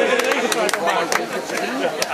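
Outdoor crowd chatter: many voices talking at once, with scattered sharp clicks through it.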